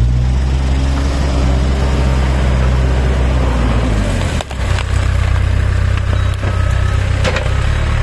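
Backhoe loader's diesel engine running steadily as its front bucket pushes through dry brush and branches, which crack and snap. The engine note dips briefly about halfway, and there are a few sharp knocks.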